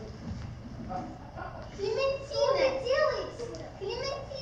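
A child's voice speaking loudly and high-pitched, with sweeping rises and falls in pitch, coming in about two seconds in.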